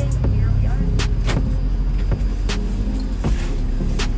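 Low rumble of a shuttle van's engine heard inside its cabin, with a few sharp clicks and knocks spread through it.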